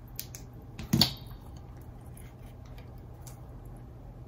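Small tools and guitar parts handled on a workbench: a couple of light clicks, then one sharp metallic clink with a brief ring about a second in, and a few faint clicks later, over a steady low hum.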